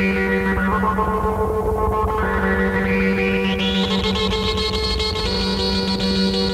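Moog modular synthesizer music: sustained, droning tones with tape delay and echo. The sound darkens over the first two seconds and brightens again by about the fourth second, like a filter closing and reopening.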